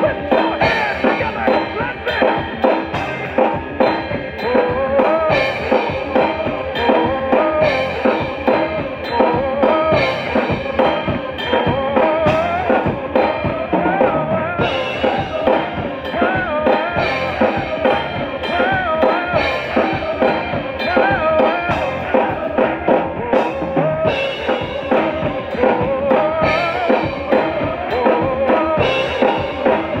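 SPL Unity Birch five-piece acoustic drum kit with Sabian cymbals played in a steady groove of kick, snare and cymbal hits, over a recorded gospel song whose melody runs continuously underneath.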